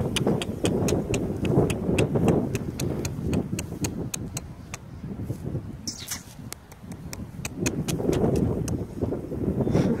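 Crisp clicks, about four a second, of grass being torn and chewed by a grazing animal close by. Wind rumbles on the microphone throughout.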